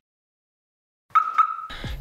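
Silence for about a second, then a short high electronic tone with two clicks, a glitchy logo sound effect, followed by faint room tone.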